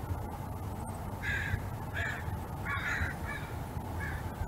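Crows cawing, four separate caws spread over the last three seconds.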